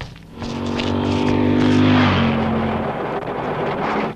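A motor vehicle engine passing by at speed: its note swells, then drops in pitch as it goes past about two seconds in.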